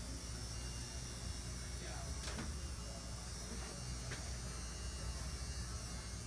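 A steady low electrical hum, with a couple of faint clicks partway through.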